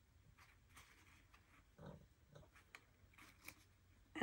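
Near silence with faint handling sounds: light rustles, taps and small clicks as an artificial leaf is pressed and glued onto a wooden bead wreath, with a soft thud about two seconds in.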